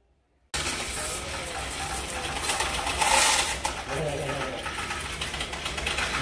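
Coins clattering and a motorised counting mechanism running inside a bank's coin deposit machine as it takes in coins. It starts suddenly about half a second in, with a louder burst of clatter around three seconds in.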